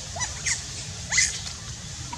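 Young macaque giving three short, high-pitched rising squeaks, the last the loudest.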